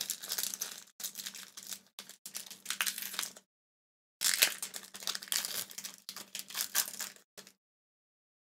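Foil wrapper of a Pokémon TCG booster pack crinkling and tearing as it is opened by hand, in two stretches with a short pause between them, stopping shortly before the end.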